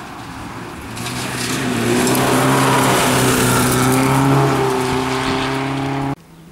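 Rally car's engine running hard at a steady pitch as it slides through a gravel corner, growing louder from about a second in as it approaches. A hiss and patter of gravel is thrown up by the tyres.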